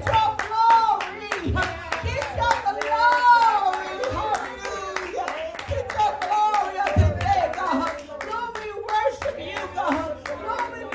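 A woman's amplified voice in long, drawn-out, rising and falling notes, over hand-clapping in a steady rhythm.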